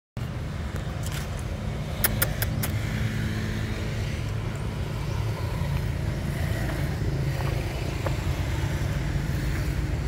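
Steady low outdoor rumble, with a quick run of sharp clicks about two seconds in.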